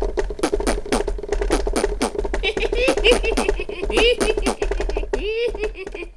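Cartoon sound effect of a bird spraying a rapid stream of poop: quick splats at about six a second, with short wavering cries over them, thinning out near the end.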